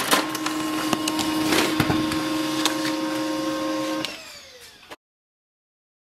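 Pantum M6507NW laser all-in-one printer running as it prints a page: a steady mechanical hum with a few clicks, which stops about four seconds in.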